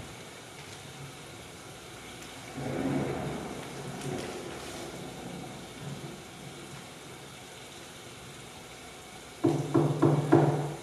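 A low rumble that swells about two and a half seconds in and dies away over the next few seconds, then a run of loud, low, pitched hits near the end.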